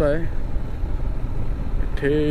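Motorcycle running along at a steady pace, a low steady rumble of engine and road mixed with wind on the microphone.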